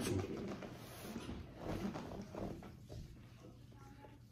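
Faint soft rubbing and sliding of gloved hands massaging lotion into bare skin, coming and going irregularly.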